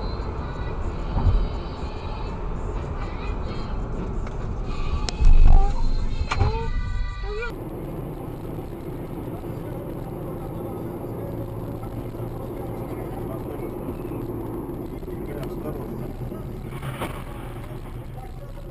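Dashcam audio of a car in motion: engine and road noise in the cabin, with a heavy thump about a second in and a louder one about five seconds in, followed by a voice crying out. Then a steady drone of engine and tyre noise from another car's cabin, with a brief sharp knock near the end.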